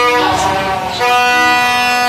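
Plastic toy trumpets blown in long, buzzy blasts, several at once at different pitches. One note breaks off and another starts about a second in, with short downward slides in pitch.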